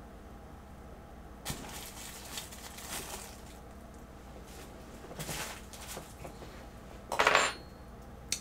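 Handling noises on a work table: a few irregular light clinks and knocks of small objects being moved, the loudest a short sharp burst about seven seconds in.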